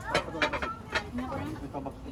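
Indistinct voices of people talking in the background, quieter than the nearby narration.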